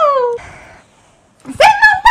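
Two drawn-out high-pitched vocal calls: one sliding down in pitch and ending early, then a second that rises and holds from about a second and a half in.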